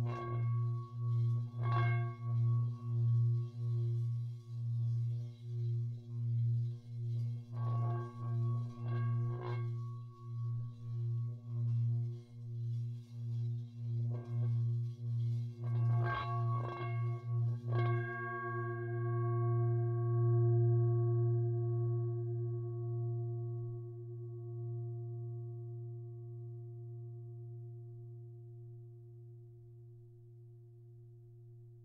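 Tibetan singing bowls: a deep low tone that throbs about one and a half times a second, with higher bowls struck now and then so that their ringing tones layer over it. A few strikes come close together a little past halfway. After them the throbbing stops and the held tones slowly fade away.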